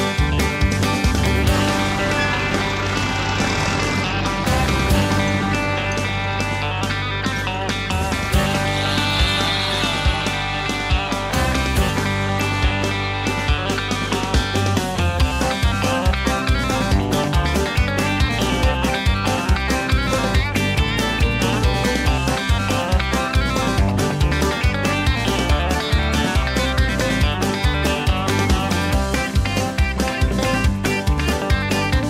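Background music: a country-style tune led by guitar, with a steady beat.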